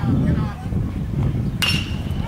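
A metal baseball bat striking a pitched ball about one and a half seconds in: a single sharp ping with a brief high ring.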